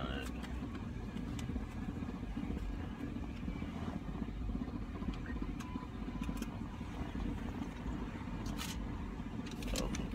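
Car engine idling, heard from inside the cab as a steady low rumble, with a few light clicks near the end.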